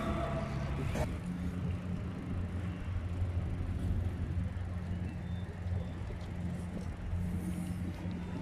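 Wind rumbling on a phone's microphone while riding a bicycle, a steady low buffeting with a single click about a second in.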